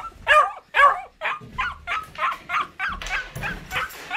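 A dog yelping and whining in a rapid series of short, arched cries: the distress of a pet just left alone by its owner.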